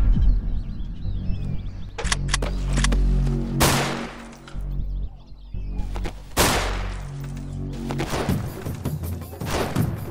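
Gunshots over a low, sustained film score: a few sharp shots about two seconds in, two loud shots that ring out at about three and a half and six and a half seconds, then a quick run of shots in the last two seconds.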